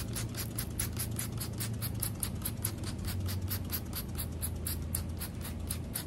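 Trigger spray bottle of cleaning solution pumped rapidly, about five short hissing squirts a second, spraying a bundle of AV and power cords.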